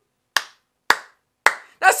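Three sharp hand claps, evenly spaced about half a second apart.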